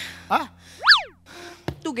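Comic sound effect: a quick whistle-like glide, about a second in, whose pitch shoots up and then drops straight back down.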